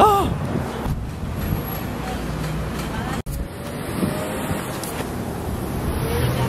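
A woman's short gasp, then steady city street traffic noise from passing cars. The sound drops out for an instant a little past three seconds in.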